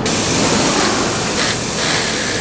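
Old Snap-on impact wrench running continuously, a loud steady rushing noise, as it loosens a side-step mounting bolt.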